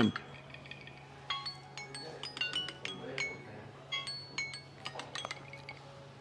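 Glass and crockery clinking: a scatter of short, ringing chinks through most of the few seconds, over a low steady hum.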